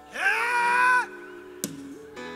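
A person's loud, high-pitched cry that swoops up and is held for about a second before breaking off, over sustained background music chords. A single click follows later.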